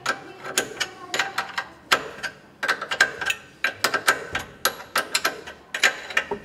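Metal clicking and clacking from a Hyundai H1 4x4 driveshaft CV joint as it is worked and turned by hand while being greased. The sharp clicks come irregularly, several a second.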